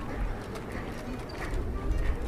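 A bird cooing, with the murmur of passers-by' voices.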